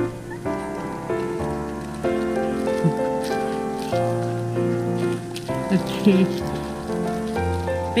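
Background piano music: a slow melody of held notes over low sustained bass notes. A voice is heard briefly about six seconds in.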